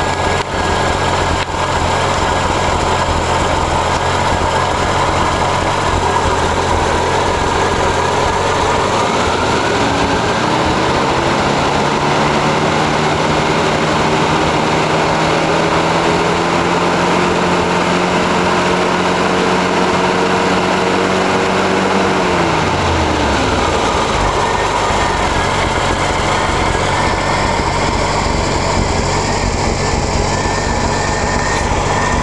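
1985 Jeep CJ7 engine on a Weber carburettor idling rough with a miss. About nine seconds in the throttle is opened gradually by hand, and the engine speed climbs and holds for around ten seconds. It then drops back to the rough idle, which the owner puts down to choke adjustment and a rough-running Weber.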